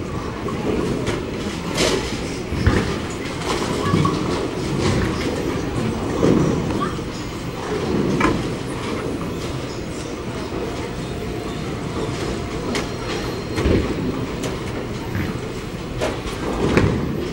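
Bowling alley din: a steady rumble of bowling balls rolling down the lanes and through the ball return, with the sharp crash of pins every few seconds.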